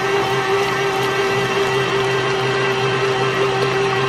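Electric stand mixer running steadily at an even speed, its motor giving a constant hum and whine while the beater mixes a thick cream-cheese pudding batter in a steel bowl.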